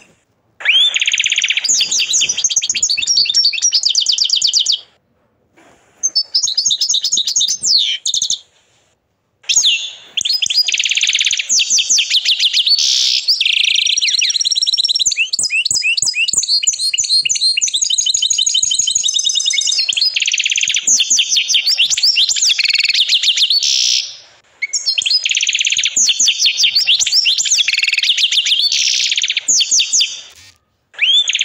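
Agate canary singing long, fast trilled phrases of rapidly repeated high notes, broken by brief pauses about five, eight and twenty-four seconds in.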